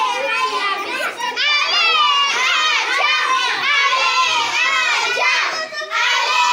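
A crowd of young children shouting and cheering together in a classroom, many high voices overlapping without a break.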